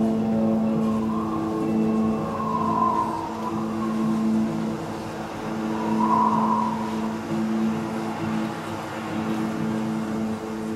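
Sustained ambient drone from a stage production's sound score: a steady low tone with overtones and no beat. A higher, wavering tone swells over it twice, about one to three seconds in and around six seconds.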